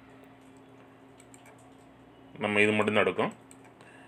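Faint computer keyboard typing, with scattered light key clicks over a low steady hum. A voice speaks briefly a little past halfway through.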